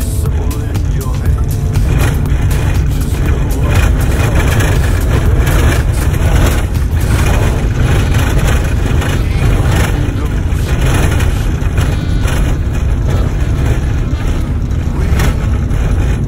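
Van driving over a corrugated dirt road, heard from inside the cabin: a loud, continuous rumble with fast, constant rattling and shaking from the washboard ruts.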